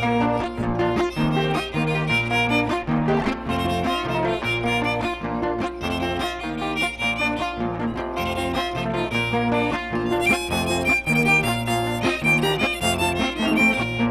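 Violin and acoustic guitar playing an instrumental passage of a Panamanian torrente, the violin leading the melody over the guitar's repeating accompaniment.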